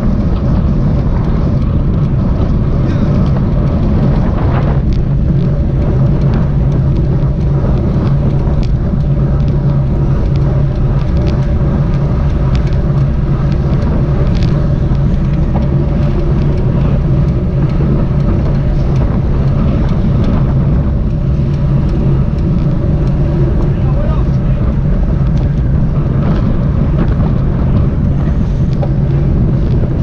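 Steady wind rush on the microphone with road-bike tyre noise, riding in a bunch at about 30–35 km/h, with a few brief clicks.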